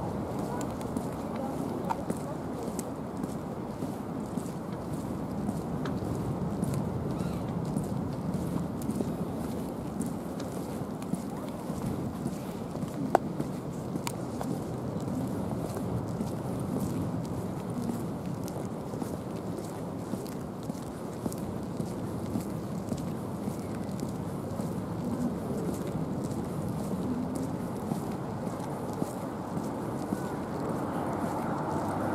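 Footsteps of someone walking on pavement over a steady outdoor background noise, with one sharp click about 13 seconds in.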